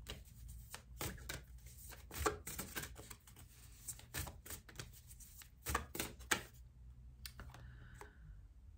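An oracle card deck being shuffled by hand: a run of soft, irregular card slaps and riffles that thin out and stop near the end.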